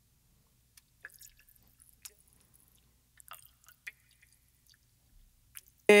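Mouth clicks and lip smacks isolated from a solo vocal recording: the small noises that a transient processor set to remove mouth clicks is cutting out. A scattering of short, sharp ticks with quiet between them.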